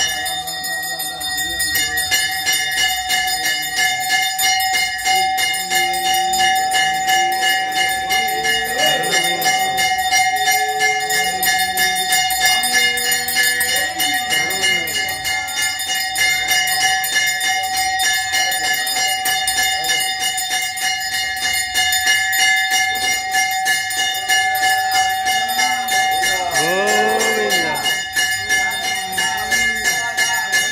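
Hindu temple bells ringing rapidly and without a break during the aarti, the lamp-waving offering to the deity, a dense jangling ring with steady ringing tones. A few brief rising and falling voice-like sounds cut through the bells in places, most plainly near the end.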